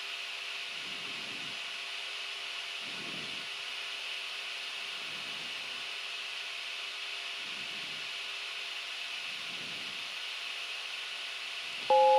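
Steady hiss of a Gulfstream G-IV's cockpit noise during the climb, with a faint steady hum underneath and faint soft low sounds about every two seconds.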